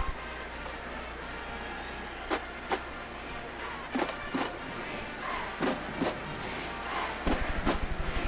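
Stadium crowd noise in a large domed arena with music in the background, marked by short loud accents that come in pairs every second and a half or so.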